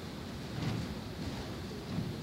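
Steady room noise: a low rumble and a hiss, with a brief faint sound about two-thirds of a second in.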